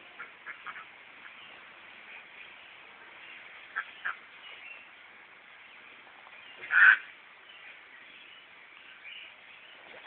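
A duck quacking: two short quacks about four seconds in and one loud quack about seven seconds in.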